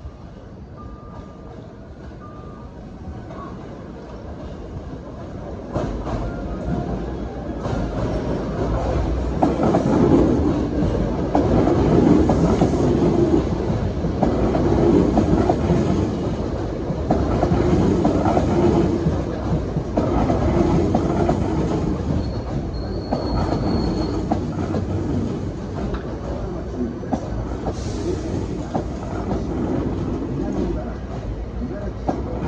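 Hankyu 8300 series electric train with a Toyo IGBT inverter arriving and slowing at a platform. It grows louder from about six seconds in as it comes alongside, with repeated knocks of the wheels over rail joints and points. A brief high steady whine comes about two-thirds of the way through.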